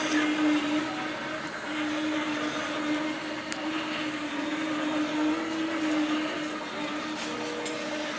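Aethon TUG autonomous hospital delivery robot driving along a corridor: its drive motors and wheels give a steady low hum over a soft hiss.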